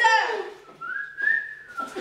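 A person whistling one short note, about a second long, that rises a little, holds, then dips at the end.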